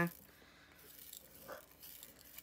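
Faint handling noise of a clear plastic drill storage case and tray on a tabletop, with one soft tap about three quarters of the way through.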